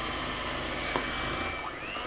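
Electric hand mixer running steadily, its beaters whisking eggs and sugar in a glass bowl.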